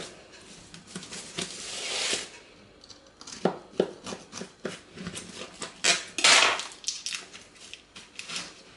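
A knife and a cake server clicking, knocking and scraping against a baking dish as a piece of crumbly cake is cut and lifted out. There are scattered sharp clicks throughout, a short scrape about two seconds in and a louder scrape near six seconds.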